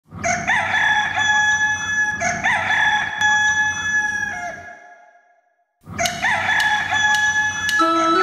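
Rooster crowing: two long crows back to back, a brief silence, then a third crow. Music starts just before the end.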